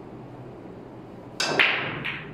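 Nine-ball break shot: the cue tip strikes the cue ball about a second and a half in, followed a moment later by a louder crack as it smashes into the racked balls, which then clack as they scatter.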